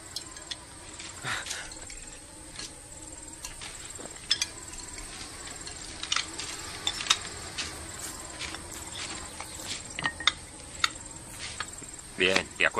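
Steady high-pitched insect chirping as background ambience, with scattered light clicks and knocks throughout.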